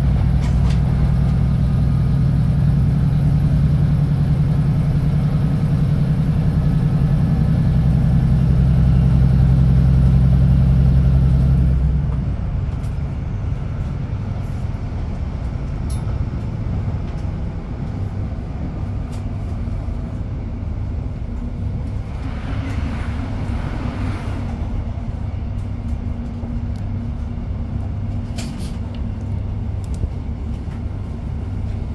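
Inside a Class 156 Super Sprinter diesel multiple unit: the underfloor Cummins diesel engine drones steadily under power, then about twelve seconds in the drone drops away as the train comes off power, leaving the rumble of the wheels on the rails as it coasts.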